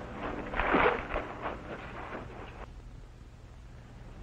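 Scuffle sounds on an old film soundtrack: rough shuffling and scraping with a brief grunt about a second in. It fades out after about two and a half seconds, leaving only a faint low hum.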